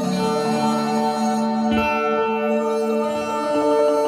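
Instrumental passage of a live band: acoustic guitar playing over sustained tones, with no singing.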